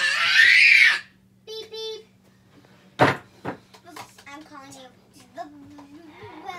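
Young children's voices in a small room: a loud rushing burst in the first second, a short high call, a sharp knock about three seconds in, then quieter chatter over a steady low hum.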